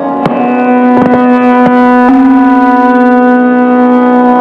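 Hindustani classical violin playing raag Shyam Kalyan, long bowed notes held and then stepping to a new pitch about halfway through, with tabla strokes struck underneath at intervals.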